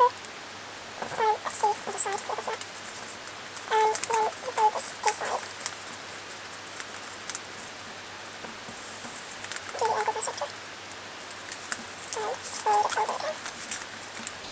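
Short, pitched animal calls in four quick clusters, several calls to each cluster. Under them is faint crinkling of origami paper being creased by hand.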